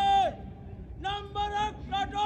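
A man shouting drill commands as drawn-out words: runs of short syllables, each ending in a long held note that drops in pitch. A held word ends just after the start, and a new command begins about a second in.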